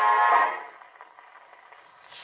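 Victrola acoustic phonograph playing a 78 rpm shellac record: the dance band's final held chord ends about half a second in, leaving only the faint hiss of the record's surface noise as it keeps turning.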